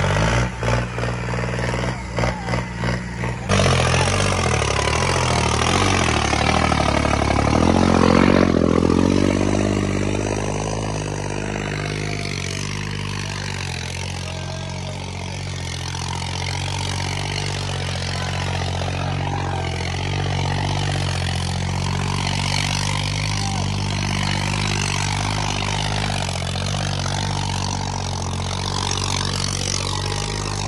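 Tractor diesel engine working hard under heavy load as it drags a sandbag-weighted cultivator through soil. The sound is choppy for the first few seconds, rises in pitch around eight seconds in, then holds a steady labouring note.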